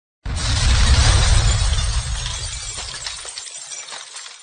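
Logo intro sound effect: a sudden crash over a deep boom that fades away over about three seconds.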